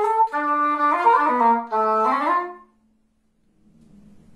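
Cor anglais (English horn) playing a slow solo melody of held notes, the phrase stepping down to a long low note that ends about two and a half seconds in.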